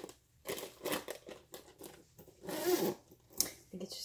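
Zipper of a makeup bag being pulled in several short strokes and one longer pull, with a sharp click near the end.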